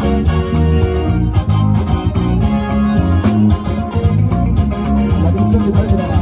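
A live band playing an amplified instrumental passage: electric guitar over bass and a steady drum beat.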